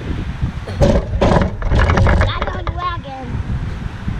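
A heavy pumpkin set down onto a metal mesh cart, several knocks and clatters in the first half, followed by a child's short vocal sound, over a steady low wind rumble on the microphone.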